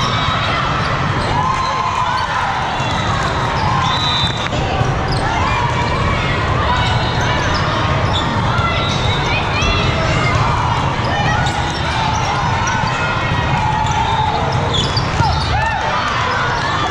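Indoor volleyball being played in a large hall: ball hits, with players and spectators calling and shouting over a steady crowd din.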